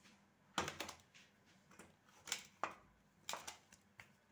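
A wooden rolling pin being set down and handled on a round rolling board (chakla), giving a few faint, scattered knocks and clicks.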